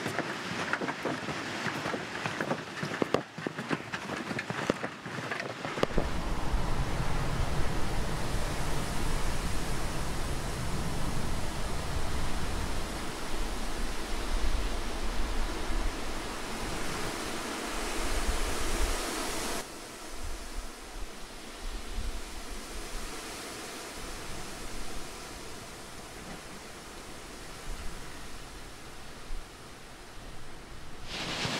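Footsteps on a wooden walkway for the first few seconds, then wind gusting over the microphone with a heavy low rumble. About two-thirds of the way through the wind noise drops off suddenly to a quieter, steady outdoor hiss.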